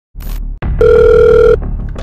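A telephone ringing for an incoming call: one loud, steady electronic ring under a second long, preceded by a click.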